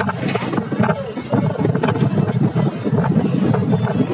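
Running noise of a moving vehicle heard from inside: a steady, uneven rumble with frequent small knocks and rattles, and wind buffeting the microphone.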